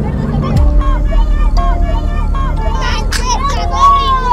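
Children's voices calling out over a moving open car's low rumble and wind, with background music underneath.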